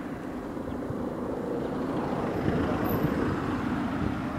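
A car's engine and road noise heard from inside the moving car, slowly growing louder.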